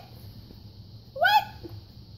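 One short, high-pitched voice sound a little past a second in, a brief bent call; the rest is faint room noise.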